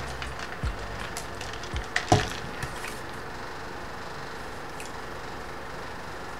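A person drinking from a plastic cup through a straw: a few faint knocks and a short sip in the first two seconds or so, then only a quiet steady room hiss.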